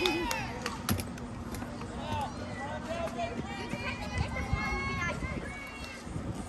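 Overlapping, distant voices of softball players and spectators calling and chattering, with no single clear speaker. A short sharp knock comes about a second in.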